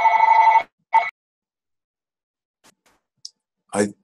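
A steady electronic ringing tone with overtones cuts off just under a second in. A short blip of the same tone follows, and then there is near silence until a voice begins near the end.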